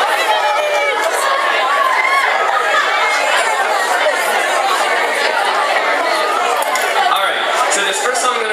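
Many people talking at once: steady audience chatter, no single voice standing out.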